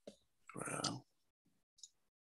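A brief half-second murmur from a participant over a video-call line, with a faint click just before it and another near the end.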